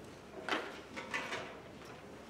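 A sharp knock about half a second in, then a few softer clicks and rustles: the shuffling and handling noise of a string orchestra settling between pieces, with no music playing.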